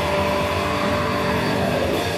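Heavy metal band playing live: distorted electric guitars holding sustained notes, one slowly bending in pitch, over bass and drums.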